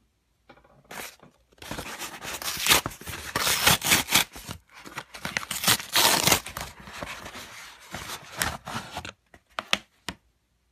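Corrugated cardboard shipping wrapper being torn open by hand in a series of loud rips with crinkling. The tearing starts about a second and a half in and thins out to a few small clicks near the end.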